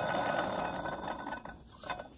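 Old water pump from a 1998 Dodge Dakota, its pulley hub spun by hand, the bearing rattling and grinding as it turns, fading away about one and a half seconds in. The bearings are worn out and the shaft wobbles, the failure that let the pump leak coolant.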